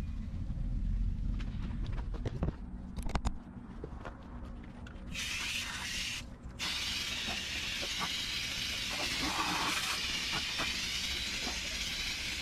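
Water from a garden hose spraying onto a dirty evaporator coil to rinse it, a steady hiss that starts about five seconds in and breaks off briefly once. Before it there is only a low rumble and a few clicks.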